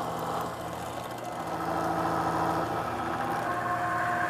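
Milling machine spindle running while an end mill cuts a notch in the end of a small metal part clamped in a vise: a steady machine hum with a higher tone joining about three and a half seconds in.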